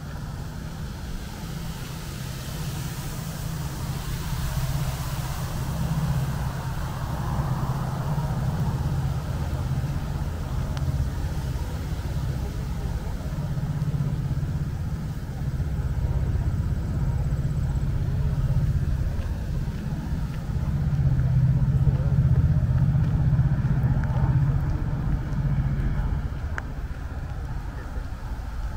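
Steady low rumble of distant road traffic, swelling louder for a few seconds about three-quarters of the way through.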